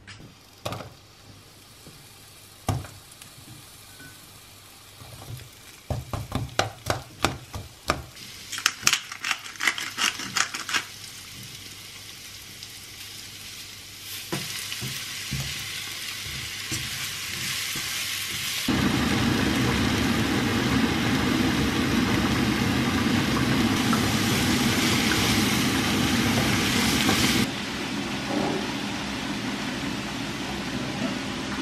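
Sliced red onion frying in a wok, a sizzling hiss that builds and jumps suddenly louder about two-thirds of the way in, then drops back near the end. Before the sizzle, a run of sharp clicks and knocks from kitchen handling comes about six to eleven seconds in.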